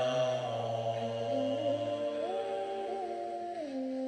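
A man chanting a Tibetan Bon mantra in long held tones. The pitch steps up about halfway through and drops back near the end, and a low undertone fades out partway.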